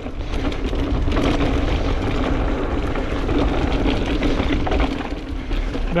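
Mountain bike rolling along a dirt trail: tyre noise on the loose surface and the bike rattling over bumps, with a steady faint hum underneath and a low rumble of wind on the camera microphone.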